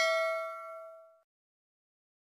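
Ringing tail of a bell-like ding sound effect from a subscribe-button animation: several steady tones fading away and ending about a second in.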